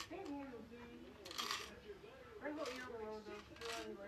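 A quiet, indistinct voice with a few brief light clicks, about a second and a half in and twice more near the end, as the plastic Lego model is turned in the hands.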